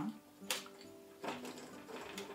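A glass dome clinking once against a stemmed glass cup filled with small rocks as it is set down, about half a second in, over soft background music.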